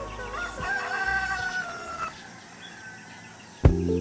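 A rooster crowing once: one long call of about two seconds that rises at the start, holds, then falls away. Music with a steady beat starts near the end.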